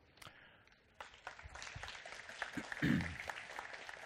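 Audience applauding, starting about a second in and carrying on steadily.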